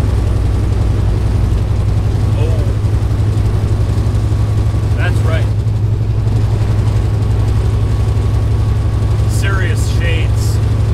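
Truck engine and road noise heard inside the cab while driving: a steady low drone. A few brief, faint voice sounds come over it.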